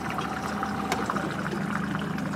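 Water lapping and trickling against the hull of a small motorboat, with small splashes and a faint steady low hum underneath.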